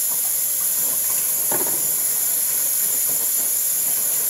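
Kitchen tap running steadily into the sink during dishwashing, a constant hiss of water.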